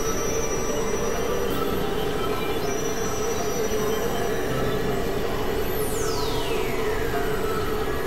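Experimental synthesizer drone and noise music: a dense, steady, noisy drone with a strong mid-pitched hum and thin high held tones. About six seconds in, a high whistle sweeps steeply down in pitch.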